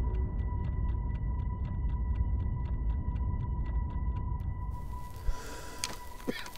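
A deep, distant rumble, under a steady high ringing tone and quick even ticking at about four ticks a second. The ticking stops a little before the end.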